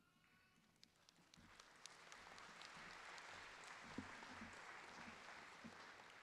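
Faint audience applause that starts about a second in, swells, and then dies away.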